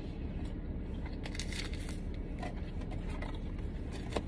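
Paper burger wrapper crinkling and rustling in the hands in irregular bursts from about a second in, over a steady low hum inside a car.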